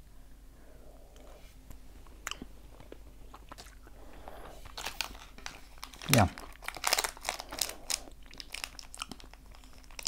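Chewing of a grape Hi-Chew fruit chew, with scattered soft mouth clicks. From about six and a half seconds in, a candy wrapper crinkles in the fingers as a wrapped Hi-Chew is picked up and handled, with a brief falling "mm" just before it.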